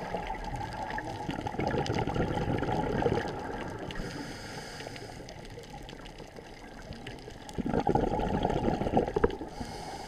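Underwater scuba breathing: a diver's regulator exhaling two bursts of bubbles, about six seconds apart, over a steady low underwater rush.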